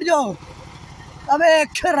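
An engine idling with a steady low pulse, heard beneath a voice that speaks briefly at the start and again from just past halfway.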